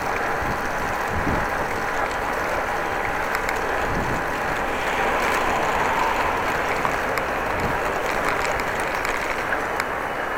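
Steady rolling noise of a bicycle ride on a wet road: tyre noise with air rushing over the microphone, and a few faint small clicks.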